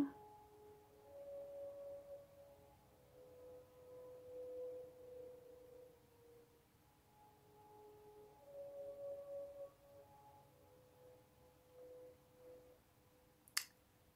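Very faint, slow melody of soft, pure held tones, each note lasting a second or two before the pitch shifts, under near silence. A single sharp click comes near the end.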